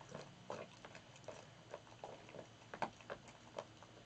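Great Dane chewing raw meat and bone: faint, irregular crunching and wet smacking, several bites a second with a few louder crunches.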